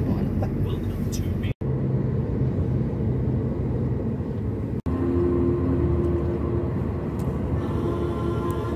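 A car driving on the road, heard from inside: a steady low engine and road rumble. It drops out abruptly twice, about a second and a half in and near five seconds in. After the second break a steady hum joins it.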